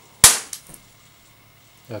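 A single sharp, loud bang about a quarter second in, dying away quickly, followed by two much fainter pops.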